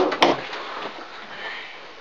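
A single sharp knock just after the start, then quiet room tone.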